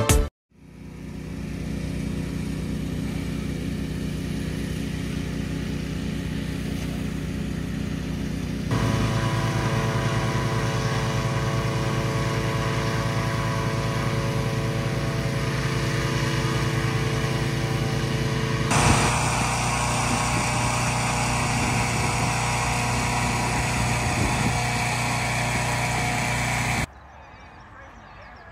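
Petrol-engined inflator fans running steadily, blowing cold air into hot air balloon envelopes. The sound steps up in level about nine seconds in, takes on more hiss about nineteen seconds in, and cuts off suddenly about a second before the end.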